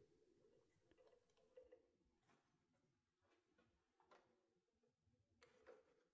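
Near silence, with a few faint ticks and rubs of handling as a Rycote windshield is slid onto its suspension mount, a small cluster of them near the end.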